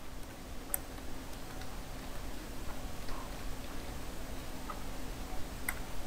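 A few faint, separate computer keyboard keystroke clicks, spaced about a second apart, over a low steady background hum.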